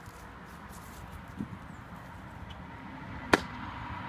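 A single sharp click, about three seconds in, with a softer click about a second and a half in, over faint outdoor background.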